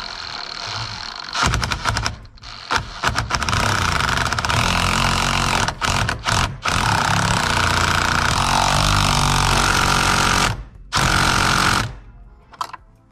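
A DeWalt cordless impact driver hammering the steering wheel's centre bolt tight. It gives a few short bursts, then runs for about seven seconds with two brief pauses, and makes one last short burst near the end.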